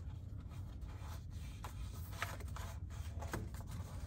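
Faint rustling and rubbing of hands pressing and smoothing an adhesive vinyl wrap around a tumbler, with a few soft scrapes and clicks, over a low steady hum.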